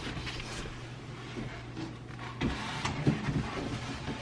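A large cardboard television box being slid up off the foam-packed TV: faint cardboard scraping and rubbing, with a few light knocks about two and a half and three seconds in.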